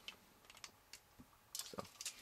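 Faint clicks and taps of a plastic transforming toy robot's parts being handled and fitted together: a few soft ticks, then a louder cluster of clicks about three-quarters of the way through.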